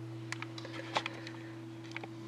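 A low, steady electrical-sounding hum with a few faint, short clicks scattered through it.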